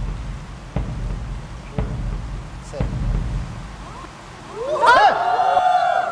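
Slow, evenly spaced thumps about once a second over a low rumble, like an edited-in suspense beat. Near the end, several voices cry out together with rising and falling pitch.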